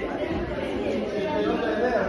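Indistinct chatter of several voices talking at once. No single speaker stands out.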